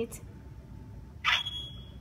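One steady high-pitched electronic beep from a V-cube Wi-Fi IP camera, beginning about two-thirds of the way in just after a brief burst of noise, while its reset button is held down. The beep is the camera's cue that the reset has taken and the button can be released.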